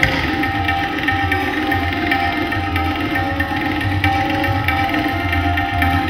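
Indian classical trio playing: tabla strokes, with deep bass-drum thuds, over the held tones of a harmonium and a bowed sarangi.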